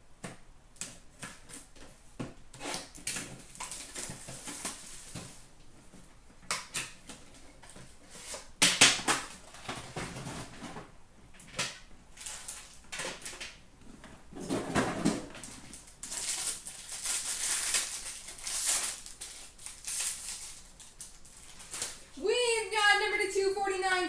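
Hands opening and handling a hockey card box and its pack: cardboard and wrapper rustling and tearing, with many small clicks and taps as cards and packaging are handled and set down. A sharper knock comes about nine seconds in.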